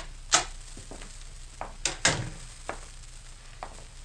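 Steady hiss and crackle of an old 1940s radio transcription recording, with a sharp click just after the start, the loudest sound, and a few fainter knocks and clicks, the largest about two seconds in.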